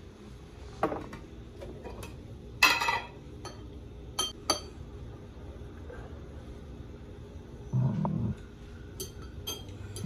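A metal fork clinking against a glass jar while pickle slices are fished out: a few separate sharp clinks, with one louder clatter about three seconds in.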